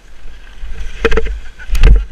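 Wind rumbling on a helmet-mounted action camera's microphone while skiing, broken by two heavy thumps about a second in and near the end, the second the louder, as of a fall in snow.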